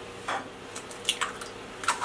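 Eggs being cracked on a glass baking dish: a few short, separate clicks and taps of shell on glass.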